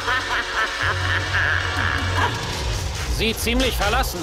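Background film score music, with short animal-like cries in the last second.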